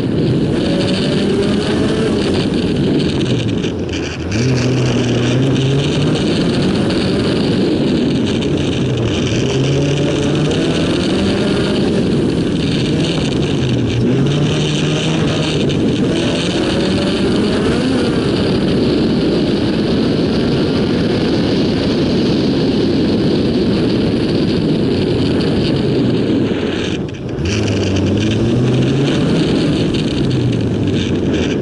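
A car's engine working hard through a slalom run, heard from inside the car. The revs climb and drop again and again through the cone sections, with a brief lift off the throttle about four seconds in and another near the end.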